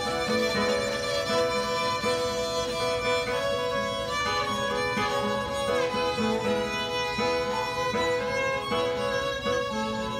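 Instrumental break of a live folk band: fiddles bowing a melody, with sliding notes, over acoustic guitar accompaniment.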